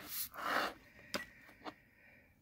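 Handling noise at a table: a brief rustle and a short breath-like puff of air, then two light clicks about half a second apart as jewellery is handled.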